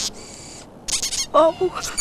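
Mice squeaking in short, high-pitched squeaks, the clearest cluster about a second in.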